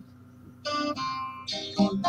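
Blues guitar played alone between sung lines: a short hush, then several plucked notes starting about half a second in.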